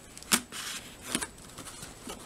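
Cardboard box and packing tape being handled and picked at to open it, with a sharp click about a third of a second in and another just after a second.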